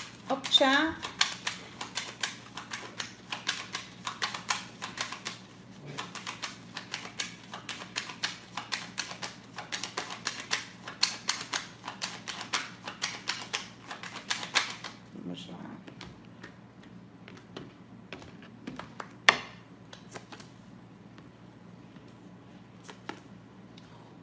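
A deck of Rainha das Serpentes oracle cards being shuffled by hand: a long run of quick, dense papery card clicks. After about fifteen seconds the clicks thin out to scattered ones, with one sharper snap a little past the middle.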